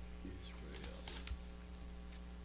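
Faint light ticks and rustles of Bible pages being turned, over a steady low electrical hum.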